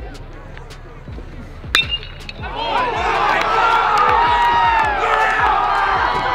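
A metal baseball bat hits a pitched ball with a sharp ping about two seconds in. Right after, a crowd of fans breaks into loud cheering and yelling that keeps going.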